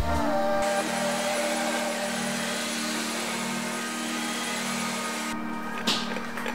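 A cordless stick vacuum cleaner running with a thin high whine over its hiss. It comes on suddenly about half a second in and cuts off suddenly about a second before the end.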